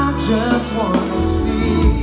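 Live band music: drum kit with cymbal crashes, a steady bass line and keyboard under a trumpet playing a melodic fill between sung lines.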